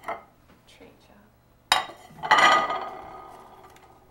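Ceramic dinner plates clattering against each other and the stone countertop as they are handled. There is a sharp knock and then, about half a second later, a louder clatter that rings and fades out over a second or so.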